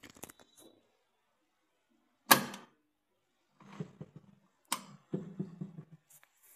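Handling noise: a few small clicks at the start, then two sharp clicks about two seconds apart, with softer low knocks and rubbing between and after them.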